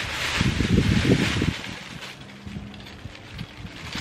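A thin plastic bag rustling and crinkling as a gloved hand rummages through it. The rustling is loudest for the first second and a half, then drops to quieter, scattered rustles.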